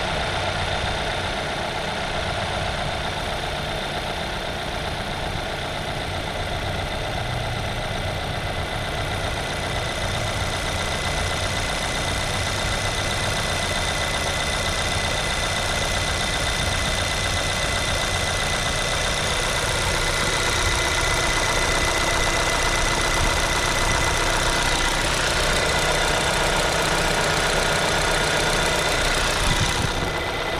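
Seat Ateca's 1.5 EcoTSI four-cylinder turbo petrol engine idling steadily, heard with the bonnet open, with a thin steady high whine over the engine note. It gets a little louder about two-thirds of the way through.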